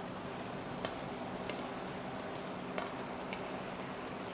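Meat and onion sauce cooking in a pan, a steady sizzle with a few faint pops.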